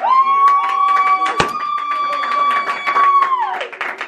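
A high-pitched voice holds one long festive cry, sliding down and breaking off after about three and a half seconds, while hands clap. A single sharp crack sounds about a second and a half in.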